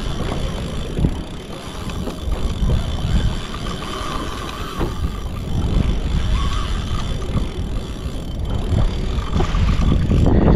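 Wind buffeting the microphone over water rushing and slapping along a fishing kayak's hull, uneven and gusty. The kayak is being towed backwards by a hooked tuna.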